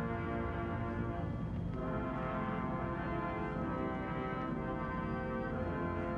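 A military brass band playing slow music in long held chords that shift a couple of times.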